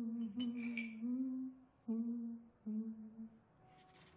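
A man humming a tune in short, held notes, stopping about three and a half seconds in. A brief hiss sounds about half a second in.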